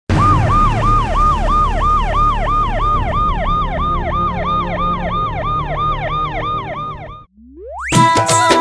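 Ambulance siren in a fast yelp, its pitch rising and falling about three times a second over a low engine rumble. It cuts off suddenly near the end, and a single rising tone sweeps up after it.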